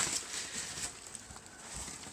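Foam packing peanuts rustling and squeaking as a hand rummages through them in a cardboard shipping box.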